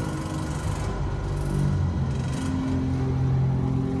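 Deep, steady hum of a fantasy-drama sound effect for a glowing magical energy barrier, with low held tones that shift in pitch a few times and faint brief hisses.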